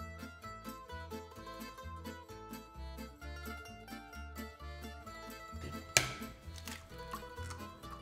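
Background music of quick plucked-string notes over a bass line, with one sharp knock about six seconds in.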